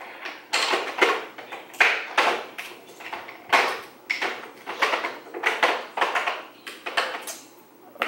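Rummaging through makeup brushes and supplies while searching for a brush: a run of short rustles and clatters, about two a second.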